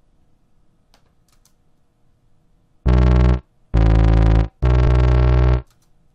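Wub Machine software synthesizer in Soundation playing three low, sustained notes in a row, loud and bass-heavy, starting about three seconds in. Its LFO speed setting has just been changed.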